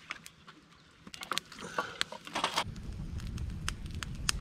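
Small kindling fire, freshly lit with birthday candles, crackling with scattered sharp snaps and pops from about a second in, joined by a low rumble near the end.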